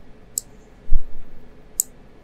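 Two sharp computer mouse clicks about a second and a half apart, with a dull low thump between them that is the loudest sound.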